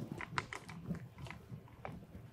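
Faint, irregular small clicks and taps, several in two seconds, over quiet room noise.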